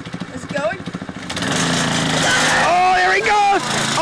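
Small go-kart engine running and speeding up as the kart pulls away across grass, getting louder about a second and a half in. A person shouts a long "ah" near the end.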